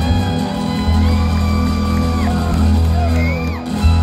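Live string band playing a tune on fiddle, two acoustic guitars and upright bass, with a short whoop from the audience about three seconds in.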